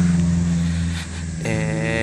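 A motor vehicle engine running steadily with a low drone.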